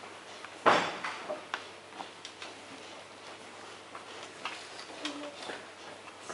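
Scattered light clicks and taps of a small knife and metal tart tin being worked on a wooden table while dough is cut out around the tin, with one sharper knock about a second in.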